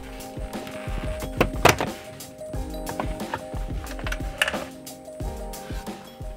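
Background music, with a few sharp plastic clicks and snaps as the clipped-in plastic trim bezel around a manual shifter is pried loose; the loudest snap comes about a second and a half in.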